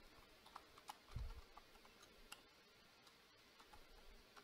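Faint computer keyboard typing: scattered light key clicks, with one soft low thump about a second in.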